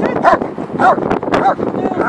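German shepherd barking at a protection-training helper's padded sleeve while sitting and guarding him: sharp barks about two a second, three of them, with a weaker, higher yelp near the end.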